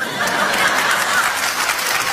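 Recorded audience laughter, a laugh track: a dense, steady crowd sound that comes in loud as the speech stops.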